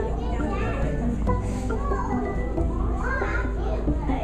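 Children's and adults' voices chattering and calling out together in a crowded hall, with music playing underneath.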